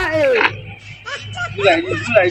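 A man's voice: a loud, drawn-out vocal cry that falls in pitch over the first half second, then shorter wordless vocal sounds near the end.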